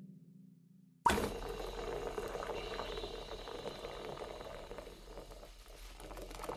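The low tail of a drum hit dies away. About a second in, water starts running steadily from a tap into a filling bathtub.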